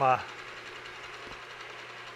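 Milling machine running, a steady low hum with no cutting heard.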